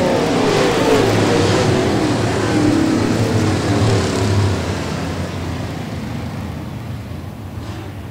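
Dirt super late model race cars' V8 engines running as the field backs off under a caution, the pitch dropping and the sound slowly fading away.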